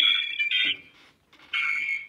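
Two high-pitched steady tones, the first about three quarters of a second long at the start and a shorter one near the end.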